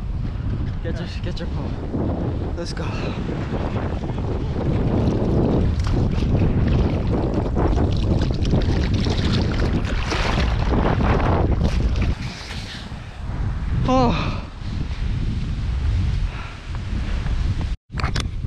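Strong wind buffeting the microphone over surf washing and splashing around the shoreline rocks, loud throughout. A short voice call cuts through about fourteen seconds in.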